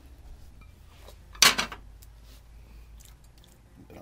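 A metal utensil clanks once against a stainless steel pan about a second and a half in, over a low steady hum.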